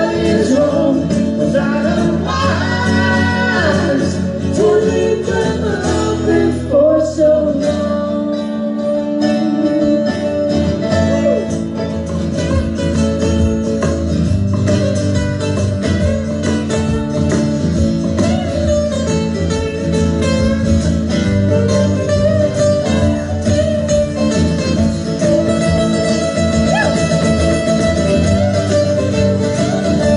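Live acoustic country-rock: a woman singing over strummed and picked acoustic guitars, her voice most prominent in the first several seconds.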